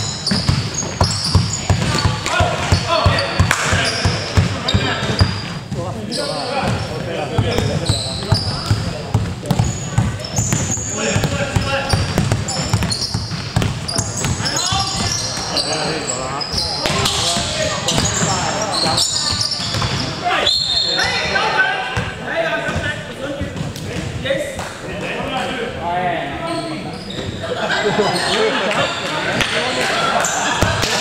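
Basketball bouncing on a hardwood gym floor amid players' voices and calls, with short high sneaker squeaks and reverberation of a large hall. The ball and footfall knocks are thickest in the first half.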